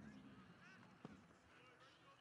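Faint open-air ambience with distant birds calling in short, repeated chirps, and one sharp tap about a second in.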